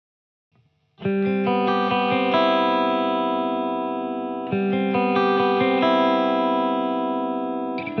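Clean electric guitar played through a Bogner Ecstasy 101B tube amp head and an Orange cabinet with Celestion Classic Lead 80 speakers, picking ringing arpeggiated chords. The playing starts about a second in, and the chord changes about halfway through and again near the end.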